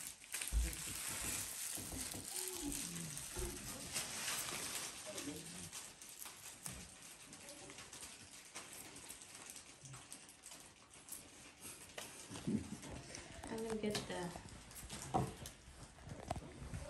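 Quiet murmured voices, with light clicks and rustling as small sweets and wrappers are handled on a table.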